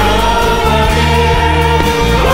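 A woman singing a Korean worship song into a microphone, holding one long note over instrumental accompaniment with a steady bass.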